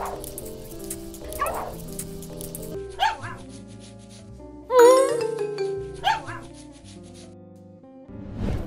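A dog barking four short times over steady background music, the loudest bark about halfway through with a sliding pitch.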